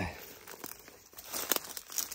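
Light crackling and rustling of dry grass and brush underfoot as someone steps through undergrowth, with a few sharper clicks about one and a half seconds in.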